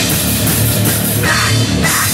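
A live heavy rock band playing loud through amplifiers: distorted electric guitar, bass guitar and a pounding drum kit, with a harsh shouted vocal into the microphone about halfway through.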